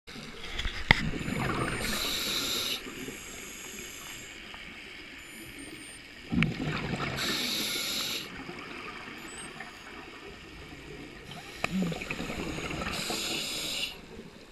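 Scuba diver breathing through a regulator underwater: three breath cycles about five seconds apart, each a burst of bubbling from the exhaust followed by a hiss.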